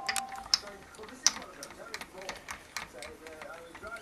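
Old steel strings being taken off an electric guitar: irregular clicks and ticks as the slack strings rattle against the frets, nut and tuning pegs.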